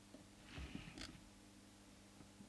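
Near silence with a faint steady hum. A brief soft rustle and a small click about a second in, from a hand working inside the radio's chassis.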